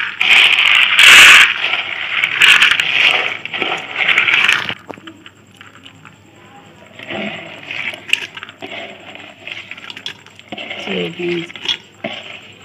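Soaked black chickpeas poured from a plastic bowl into an empty metal pressure-cooker pot, rattling loudly against the metal for the first five seconds or so. After that come quieter, scattered sounds as the last chickpeas are scooped and pushed in by hand.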